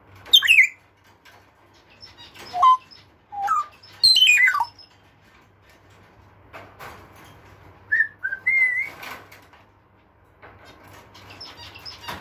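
African grey parrot whistling and calling in short separate phrases: a falling whistle near the start, a few short rising notes, a long falling whistle about four seconds in, and a wavering whistle near nine seconds, with a few clicks in between.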